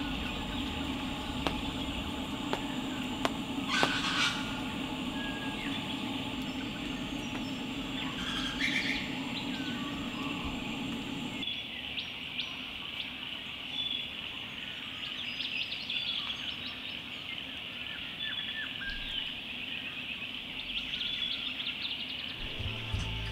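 Bush ambience: birds chirping over a steady background hiss, with a lower hum that drops away about halfway through.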